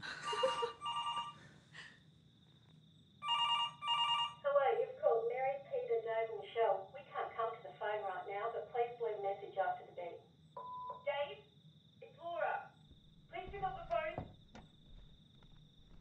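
A telephone ringing in two bursts, the second about three seconds in, followed by voices talking.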